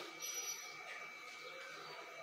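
Faint handling of a plastic hair-mask jar as it is opened and tilted, against quiet room tone.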